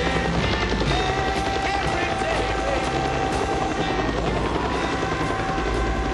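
Helicopter running, with a steady tone that rises in pitch about four seconds in, mixed with music and indistinct voices in a film soundtrack.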